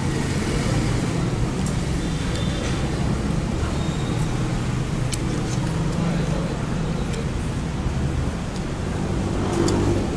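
Steady low rumble of busy restaurant background noise, with a murmur of other diners' voices and a few faint clicks.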